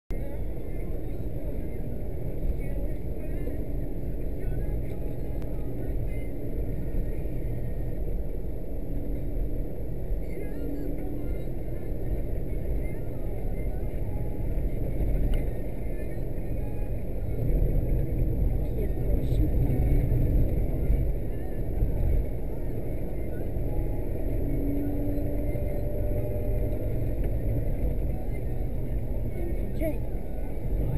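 A car's engine and tyre noise heard from inside the cabin while driving, a steady low rumble that grows a little louder for a few seconds just past the middle.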